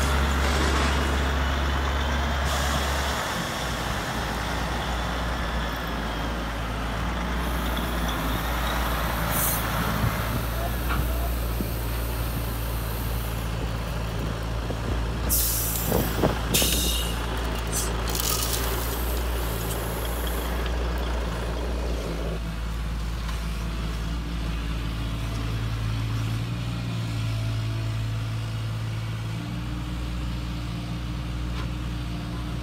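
Radio-controlled construction models running: a steady low machine hum that shifts pitch in steps, with spells of hissing in the middle and a few sharp clicks about halfway through.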